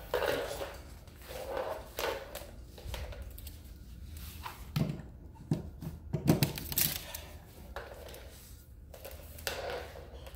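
Irregular light knocks and rustles of an extension cord being handled and of a person moving about on a tile floor.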